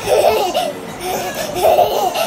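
A toddler laughing in two bursts of high-pitched giggles, one right at the start and another near the end.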